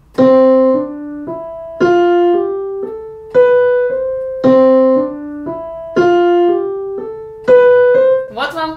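Digital keyboard with a piano sound playing a melody in even eighth notes, accented in groups of three, three and two: the same phrase heard as 8/8 counted 3+3+2 rather than as 4/4. The louder accented notes come roughly every one and a half seconds, with a shorter gap before the fourth, and the pattern then repeats.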